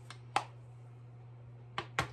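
Sharp clicks of small makeup items being handled and set down: one loud click about a third of a second in and two quicker ones near the end.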